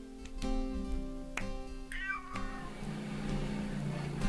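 A domestic cat meows once, a short falling call about two seconds in, over background acoustic guitar music.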